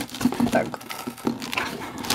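Rustling and light clicks of a cardboard shipping box and cellophane-wrapped makeup palettes being handled and moved.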